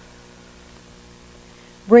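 Quiet room tone with a steady, faint electrical hum.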